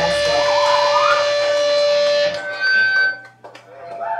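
Electric guitar and bass sustaining a final ringing chord, which cuts off sharply a little over two seconds in. A brief high-pitched whine from the amps follows, then a few small clicks as it goes nearly quiet.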